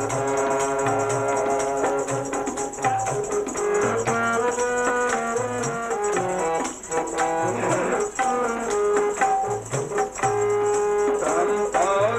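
Harmonium playing held notes and a melody line, accompanied by tabla: a steady rhythm of low bayan strokes under the reed tones.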